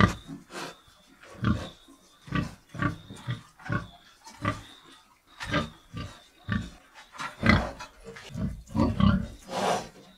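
Pigs, a sow and her piglets, grunting in short repeated calls, roughly one or two a second, with a longer, harsher call near the end.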